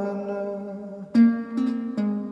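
Recreated ancient Greek kithara, a large wooden lyre, being played. Held notes ring and fade, then a sharp, loud pluck comes about halfway through, and a second pluck half a second later.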